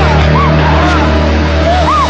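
Film soundtrack: a steady low drone with short, sliding, rising-and-falling pitched sounds over it.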